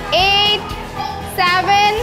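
Two short, high-pitched calls from girls' voices, each about half a second long, the first near the start and the second about a second and a half in, over background music.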